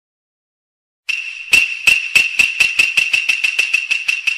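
Edited-in comedy sound effect. After about a second of silence, quick jingling percussive strokes over a high ringing tone start and speed up from about three to about six a second.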